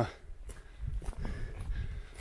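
Quiet sounds of a hiker walking uphill on a stony track: a few soft footsteps and breathing, over a steady low rumble on the microphone.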